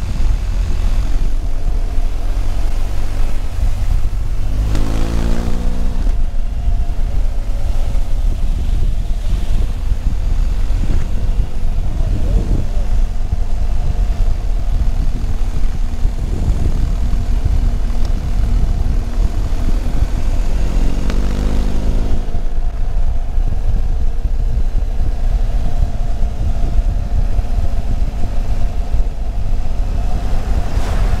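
Wind noise buffeting a helmet-mounted microphone on a large adventure motorcycle at road speed, with the engine running underneath. The engine note swells briefly twice, about five seconds in and again about twenty-one seconds in.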